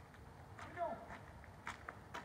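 A man's short call, then a few light footsteps on asphalt as a walking person and a large dog on a leash move off.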